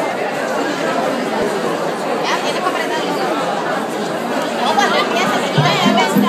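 Crowd of many people chattering at once in a large room. Near the end, low steady musical tones begin.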